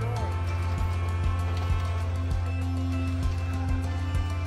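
Background music with a steady beat of about two strokes a second over held bass notes.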